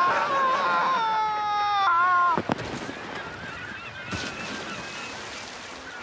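A man's long, high yell of about two and a half seconds that drops in pitch and then cuts off suddenly.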